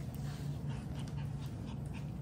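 Five-week-old puppies giving a few short, faint, high whimpers over a steady low hum.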